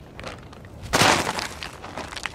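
A single loud crackling crunch about a second in, short and sharp, tailing off over the next half second.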